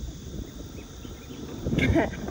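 Low rumble of wind on the microphone and tyre noise from a quietly rolling electric scooter, with a brief louder noise near the end.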